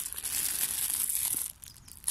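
Plastic bag crinkling and rustling as it is worked open with one hand, stopping about one and a half seconds in.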